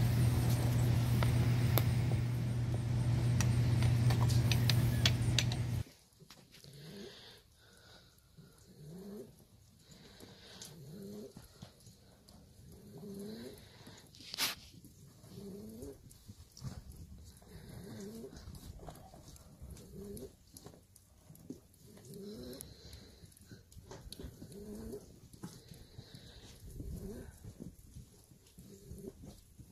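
A loud steady low hum with scattered clicks for about six seconds, then an abrupt drop to a quiet background. In it, pigeons coo over and over, one short rising call roughly every second and a half, with a single sharp click partway through.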